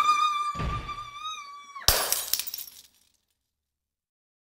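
A high voice holds one long, steady 'ah' that cuts off just before two seconds in, with a dull thump about half a second in. Then comes a sharp crash of breaking glass that dies away within a second, and all goes silent.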